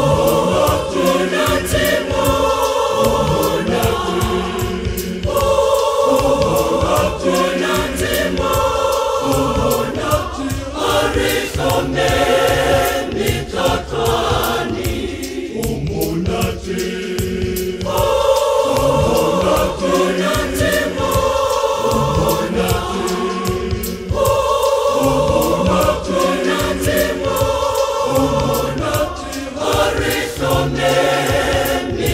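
A large mixed choir of men and women singing a gospel hymn in harmony, in held phrases of about two seconds with short breaths between them.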